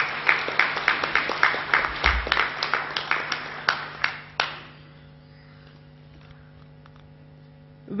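Audience applauding, a fast run of hand claps that stops about four and a half seconds in, with a brief low thump about two seconds in. After the clapping a steady low electrical hum is left.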